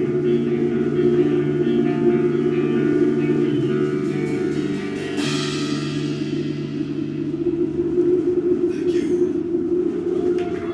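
Melodic black metal band playing live with distorted electric guitar, electric bass and drum kit in sustained chords. A sharp crash about five seconds in rings out and slowly fades.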